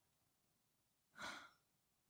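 Near silence, broken about a second in by one short sigh, an audible breath out, from the woman praying at the microphone.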